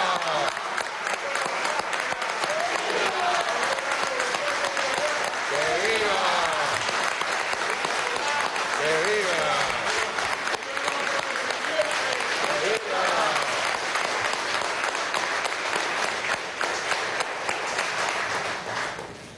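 A roomful of people applauding steadily, with voices rising and falling over the clapping several times as people call out.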